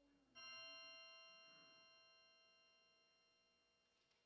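A single bell struck faintly about half a second in, its ringing tones fading slowly away.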